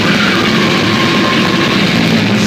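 Brutal death metal band playing live at very high volume: heavily distorted guitars and drums in a dense wall of sound, with the vocalist growling into the microphone.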